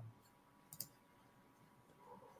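Near silence with a single faint click of a computer mouse a little under a second in.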